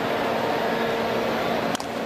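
Steady ballpark crowd noise, with one sharp crack of a bat hitting the pitched ball near the end.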